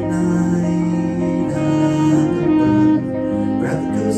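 A small jazz-style band playing live: guitar, keyboard, saxophone, bass and drums together, with long held notes.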